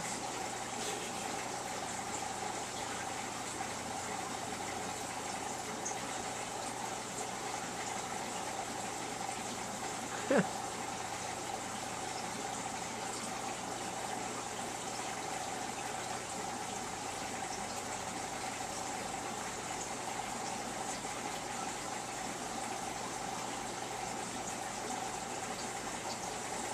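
Steady hiss and hum of an aquarium's water pump and moving water. One brief sharp sound comes about ten seconds in.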